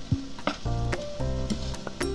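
Soy-based simmering sauce sizzling as it cooks down almost dry in a small enamel saucepan, with chopsticks clicking as they turn the pieces, under background music with sustained chords and a steady beat.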